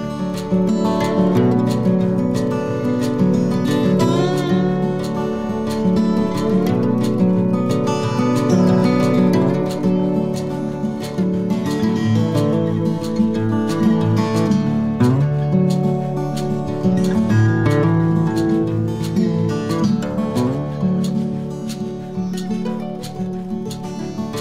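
Instrumental background music playing at an even level.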